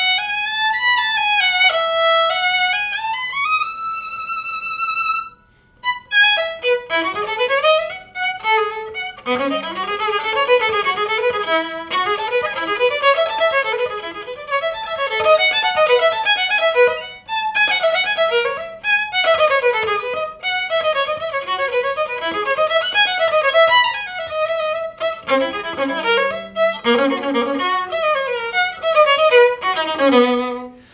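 Mezzo-Forte Design Line carbon-fibre acoustic-electric violin played through an amplifier: a slow, sustained melody with vibrato, a brief pause about five seconds in, then a faster passage of running notes, partly over a low held note.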